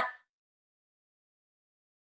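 Near silence: a woman's voice trails off in the first moment, then complete silence.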